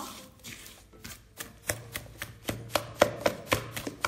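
A hand mixing wet dough in a stainless steel bowl: repeated wet slaps and squelches, about three a second, growing louder through the second half.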